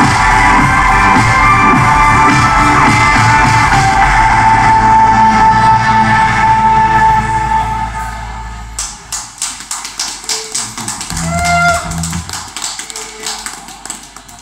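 Live band with electric guitar and keyboards holding the song's final chord, which dies away about eight seconds in. Scattered clapping from a small audience follows, with a short cheer partway through it.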